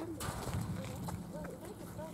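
Faint, distant voices of people talking, over a low outdoor background hum; no loud sound stands out.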